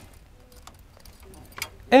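Faint, sparse light metallic clicks and clinks of a caravan's breakaway cable and its clip being handled at the tow ball. A man starts speaking at the very end.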